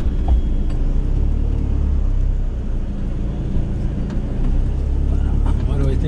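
Steady low rumble of a van's engine and tyres heard from inside the cab while it drives slowly and turns.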